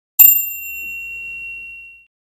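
A single bright bell ding, struck once just after the start and ringing out for well over a second, its higher overtones dying away first.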